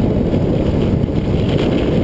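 Steady wind noise on the microphone of a handlebar-mounted camera on a moving bicycle, a dense low rumble.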